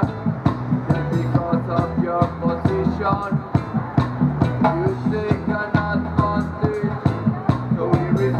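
Instrumental passage of a reggae song played live: a keyboard melody over low bass notes and a steady drum beat.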